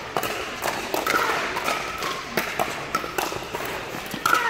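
Pickleball paddles hitting a plastic ball: sharp pops at an uneven pace, several a second, from the near rally and neighbouring courts, with a slight echo off the indoor hall.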